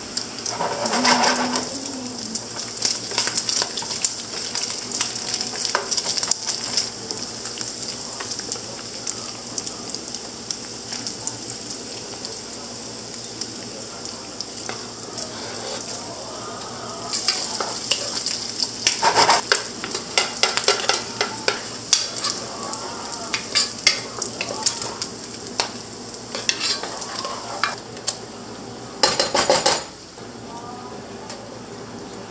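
Chopped bacon sizzling steadily in a frying pan, with a wooden spoon stirring and scraping in a pot and small knocks of cookware. The clatter is busier a little over halfway through and again near the end.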